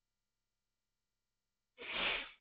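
Silence, then near the end a single short breath from a man, about half a second long, heard as a sigh.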